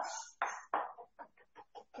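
Chef's knife rapidly chopping fresh parsley on a wooden cutting board, quick even strokes at about seven a second.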